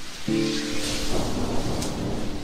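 Lo-fi background music with a held chord over a rain ambience, with a low rumble of thunder building about a second in.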